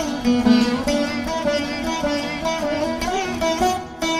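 Carnatic music on the veena: plucked notes whose pitch slides up and down between them.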